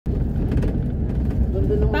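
Steady low rumble of a vehicle driving through a road tunnel, heard from on board. A voice starts speaking near the end.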